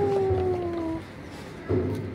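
A young child's voice holding a long 'ooh', its pitch sliding slowly down and stopping about a second in.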